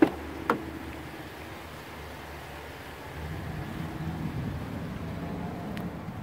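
Car door being opened by its chrome handle: two sharp clicks about half a second apart as the handle is pulled and the latch releases. A low steady rumble of background noise rises about three seconds in.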